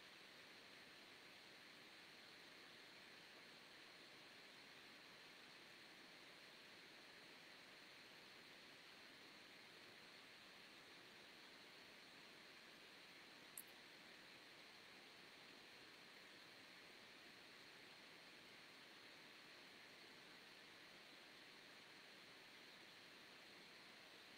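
Near silence: a faint steady hiss of room tone, with one tiny click about halfway through.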